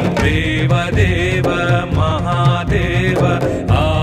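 Music: a Hindu devotional song, an ornamented singing voice over instruments and a steady percussion beat.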